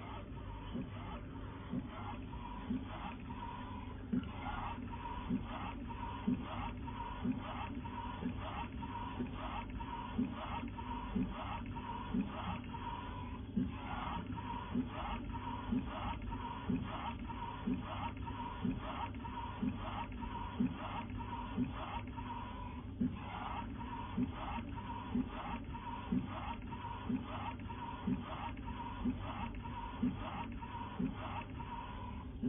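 UV flatbed printer with a rotary mug attachment running: a steady machine hum under a regular clicking about once a second.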